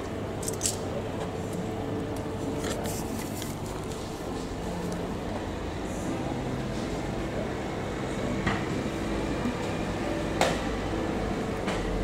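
Steady low machinery hum with a few steady tones in it, broken by a handful of light clicks and knocks, the loudest about ten seconds in.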